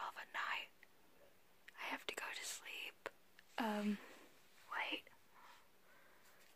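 A young woman whispering in short phrases, with one briefly voiced sound a little past the middle.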